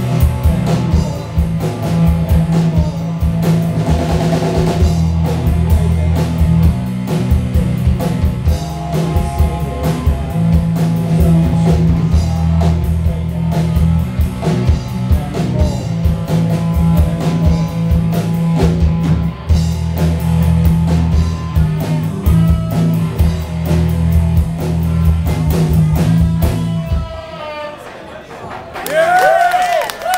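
Live rock band playing electric guitars, bass guitar and drum kit at full volume, with a steady drum beat under a heavy bass line. The song stops about a second before the end.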